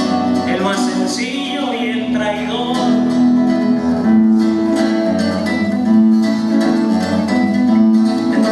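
Acoustic guitar played live, a run of plucked notes over steady held low notes in an instrumental passage of a song.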